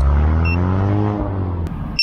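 A car driving past, its engine and tyre rumble swelling and then fading away about a second and a half in, its pitch rising and then falling. A faint short beep from the small lost-model alarm buzzer sounds about a quarter of the way in.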